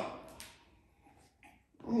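The tail of a man's speech fading out, then a gap of near silence, with a man's voice starting again right at the end.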